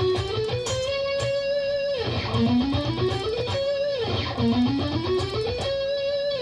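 Electric guitar playing a short climbing run, three times over: each time the notes rise step by step to a held top note, then fall back to start again.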